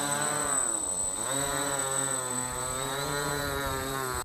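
A quadcopter built from a taxidermied cat, its four propellers buzzing in flight. The pitch sags about a second in as the rotors slow, climbs back over the next second, then holds fairly steady with slight wavering.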